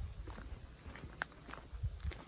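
Footsteps on a dry dirt trail, about two steps a second, each step a soft low thud with a light scuff, and one brief sharp click about a second in.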